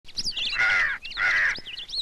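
A crow cawing twice, each call about half a second long, with small birds chirping high over it.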